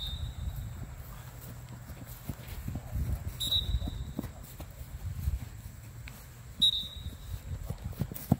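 Wind buffeting the microphone outdoors, a steady low rumble with scattered small knocks. Three short high-pitched tones sound about three seconds apart, one right at the start, with a louder knock at the last of them.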